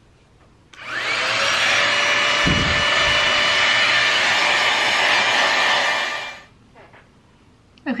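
Dyson Airwrap-style hot air styler (a dupe) running with its blow-dryer attachment. The motor spins up with a rising whine about a second in, then blows steadily, a whine over the rush of air, and winds down near the end. A brief low rumble comes about two and a half seconds in.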